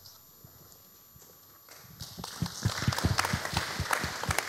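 Audience applause starting about two seconds in: a short round of clapping with separate claps audible, after a stretch of quiet room tone.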